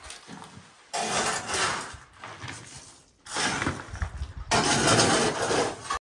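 Grit and rubble being scraped and swept across a concrete floor with a dustpan and hand brush, in three rough bouts of a second or more each, with a few dull knocks.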